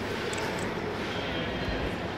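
Steady, indistinct background noise of a crowded room, with no clear voices standing out.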